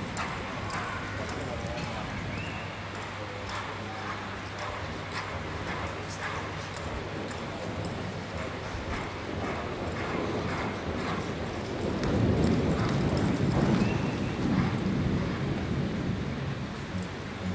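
A reining horse's hooves beating on the arena's sand footing as it lopes, a string of soft thuds. From about twelve seconds in, a louder low rumbling noise rises over the hoofbeats.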